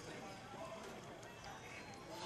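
Faint background noise during a pause in a man's speech through a microphone, with no distinct event standing out.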